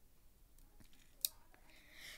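Quiet room tone with one sharp click of a computer mouse button about a second in, and a few fainter ticks around it.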